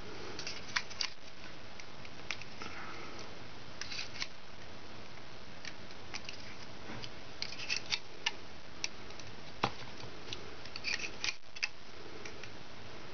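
Small, irregular clicks and ticks of a loom hook and rubber bands being worked on a plastic Rainbow Loom, bunched in two flurries in the second half, over a steady low hiss.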